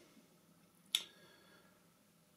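A single short, sharp click about a second in, against an otherwise quiet room.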